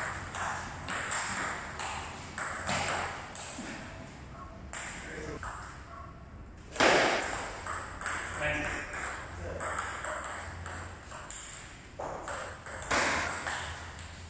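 Table tennis ball clicking back and forth off paddles and the table in a rally, with a loud sudden noise about halfway through.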